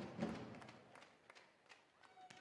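Faint hall ambience from a volleyball arena, fading to near silence, with a few faint taps.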